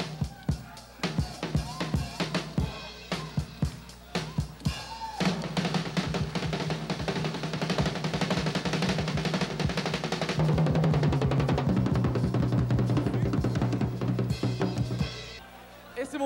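Acoustic drum kit with amber see-through acrylic shells played solo: separate strikes on drums and cymbals for the first five seconds or so, then a dense, fast run of hits with ringing cymbals for about ten seconds, stopping about a second before the end.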